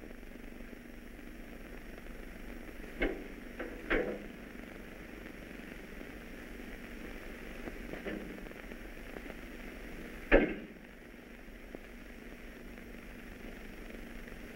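Steady hiss of an old film soundtrack with a few scattered knocks, the loudest a sharp thump about ten seconds in.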